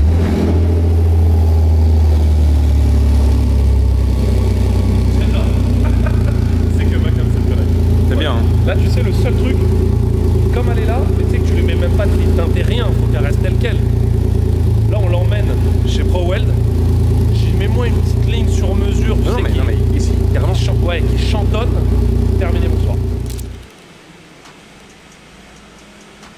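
Renault car's engine running at idle just after being started, a loud deep steady note, with people talking over it. It cuts off about 24 seconds in.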